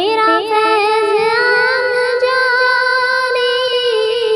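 A high voice singing a devotional Urdu naat, holding long, drawn-out notes decorated with wavering turns.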